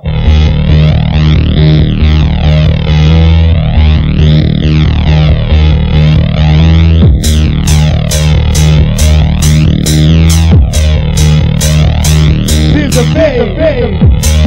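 Makina-style electronic dance music from a DJ mix: a steady, heavy bass line under a synth that sweeps up and down through a phasing effect about every two seconds. About halfway, crisp hi-hats come in at about two a second.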